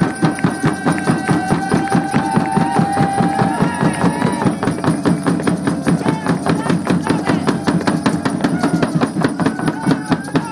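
A hand-held frame drum is beaten with a stick in a fast, steady pulse of about four beats a second. Voices hold long chanted notes over it, rising and falling a little partway through and starting again near the end.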